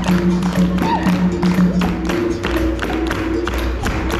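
Capoeira roda music: a berimbau's twanging tone over an atabaque drum and steady group hand-clapping in an even rhythm.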